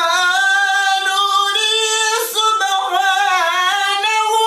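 A man's high voice reciting the Quran in the melodic, unaccompanied tajwid style, holding long notes with quick wavering ornaments.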